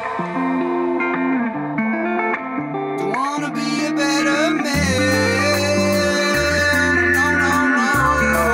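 Rock band's instrumental break: electric guitars play alone with bent notes, then drums come in about three seconds in and bass joins about five seconds in.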